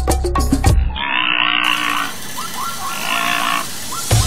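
Background music cuts off about a second in, followed by an animal's calls: two rasping stretches with short pitched yelps between them.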